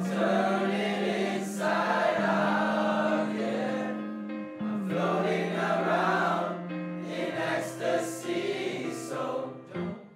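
A group of male voices singing in harmony, holding long notes that change every few seconds. The sound grows quieter and more broken near the end.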